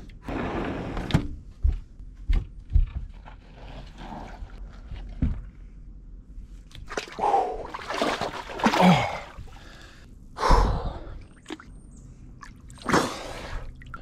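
A man gasping and blowing out hard breaths in freezing air as he gets into a hot tub, with a few sharp knocks in the first few seconds.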